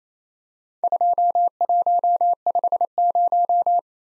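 Computer-generated Morse code tone, one steady pitch keyed in short and long elements, sending the four characters 2, 1, 5, 0 at high speed. It starts about a second in and stops just before the end.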